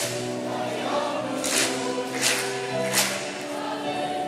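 A junior high school choir singing in parts, with the singers clapping their hands on the beat: three even claps in the second half.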